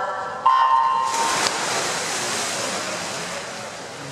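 The electronic start signal of a backstroke race gives one short steady beep about half a second in. Just after it a wide wash of noise rises and slowly fades as the swimmers push off the wall: splashing water and a cheering crowd.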